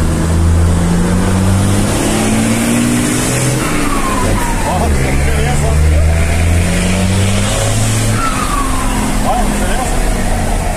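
Mercedes-Benz 1620 truck's electronic diesel engine pulling up through the revs, heard from inside the cab. The pitch drops at a gear change about four seconds in, then climbs again. Twice, as the throttle lifts, the turbo gives a falling whistle; it has a comb fitted to its intake to make it sing.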